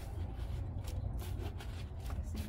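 Organic soil being scattered by hand from a bucket onto bare, loosened earth: a few faint rustles and ticks over a steady low rumble.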